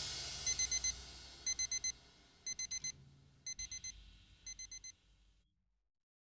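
Electronic alarm beeping in the pattern of a digital alarm clock or watch: quick bursts of four short high beeps, once a second, five times, getting fainter. The last ring of the rock song dies away under the first beeps.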